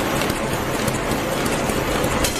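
ZF-510 automatic envelope making machine running at production speed: a steady, dense mechanical clatter of its rollers and feed mechanism.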